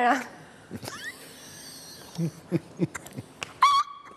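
Broken, patchy audio over a struggling Skype call link: a rising whistle-like glide about a second in, a few short muffled blips, then a loud, short, high-pitched hoot near the end.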